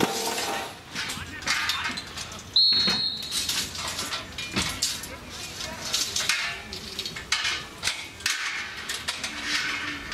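Footballers shouting and calling across an open pitch, with one short, sharp referee's whistle blast about two and a half seconds in, the loudest sound here, stopping play.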